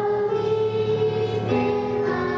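A group of children singing a song together in held notes, moving to a new note about a second and a half in.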